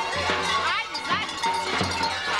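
Large metal bells on babugeri mummers' goat-hair costumes clanging in a steady rhythm, about two strikes a second, as the mummers move, with traditional music and voices mixed in.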